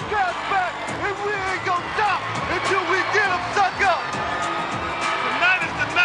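A man speaking energetically over background music.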